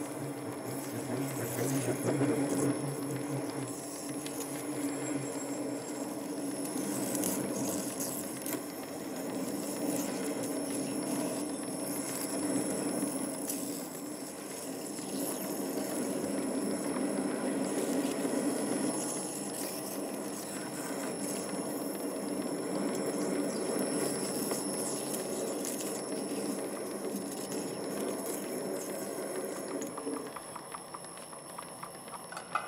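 Small MN-80 lathe running steadily while a parting tool cuts into a 50 mm brass bar, parting off a blank: an even machine hum with faint irregular ticks from the cut.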